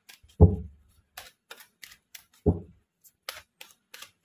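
A tarot deck being shuffled by hand: a quick run of light card clicks and flicks, with two heavier thuds, about half a second in and again about two and a half seconds in, as the cards knock together or against the table.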